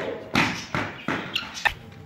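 Running footsteps on a hard paved floor: several soft thumps about a third of a second apart.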